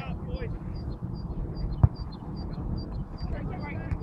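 A football struck once, a single sharp thud about two seconds in, over a steady low rumble of wind on the microphone.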